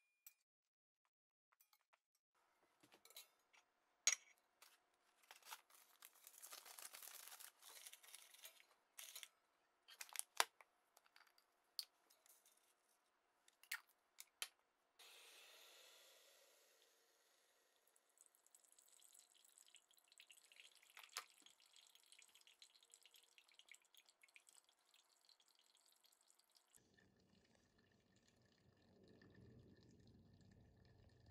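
Faint clicks and clinks of handling in the first half. About halfway through, hot water is poured from a glass kettle into a stainless steel pour-over dripper, and brewed coffee then trickles in a thin stream from the dripper's bottom into an enamel mug.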